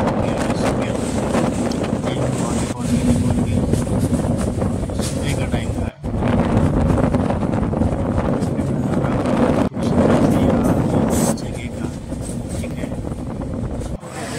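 Running noise of a moving vehicle with wind buffeting the microphone, broken by sudden cuts about six seconds in and again near ten seconds.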